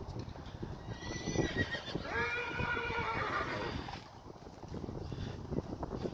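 A horse whinnying once, starting about a second in: a high opening note that drops to a lower, wavering neigh ending about four seconds in. Beneath it are the muffled hoofbeats of a horse trotting on sand footing.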